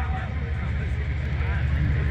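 Steady low rumble with a faint murmur of voices behind it: open-air crowd and sound-system background heard between phrases of an amplified speech.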